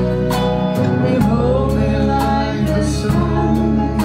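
Live acoustic folk band playing: acoustic guitars strummed in a steady rhythm of about two strokes a second over held piano accordion chords.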